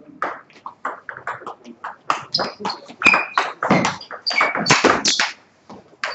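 Table tennis rally: the plastic ball clicking sharply off the bats and the table, a few hits a second, quickening and growing loudest in the second half before stopping shortly before the end as the point is won.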